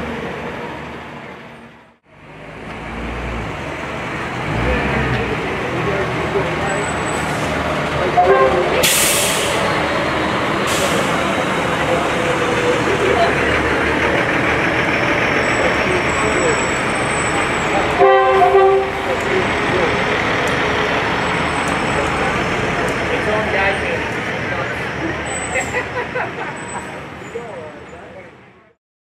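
Fire trucks rolling past in a parade, their engines running under steady crowd and street noise. Air brakes hiss twice, about nine and eleven seconds in, and a horn sounds one short blast about eighteen seconds in.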